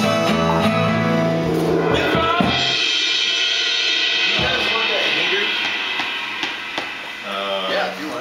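A small live band playing, with keyboard, strings and drum kit with cymbals, which breaks off about two and a half seconds in. Voices and room sound follow.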